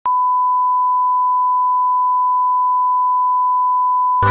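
Steady 1 kHz reference test tone, a single unchanging pure beep of the kind played under colour bars, starting abruptly at the very beginning.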